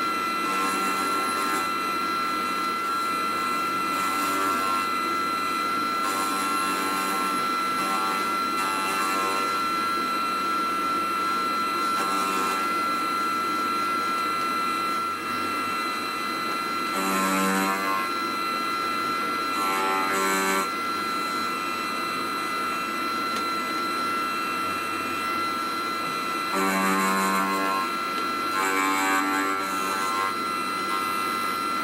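Small benchtop milling machine running with a steady motor whine while an end mill cuts the aluminium and brazing filler on a model engine crankcase. The cutter gives short buzzing bursts of chatter every few seconds as it is fed in, with louder ones past the halfway point.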